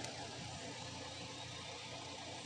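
A faint, steady low mechanical hum in the background, like an engine or machine running at a distance.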